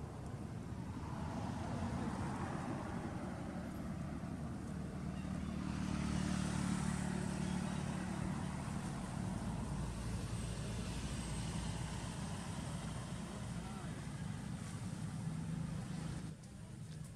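A motor vehicle's engine hum that swells to its loudest about six to eight seconds in and then eases off, as of a vehicle passing by.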